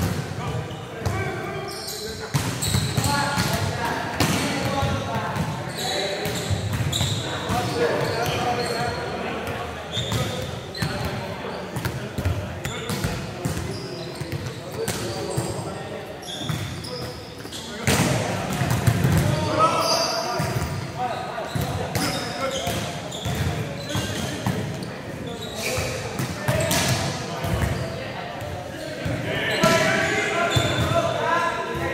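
Volleyballs being struck and passed during a warm-up drill: repeated irregular slaps of hands and forearms on the ball, echoing in a large gym hall, with players talking and calling out throughout.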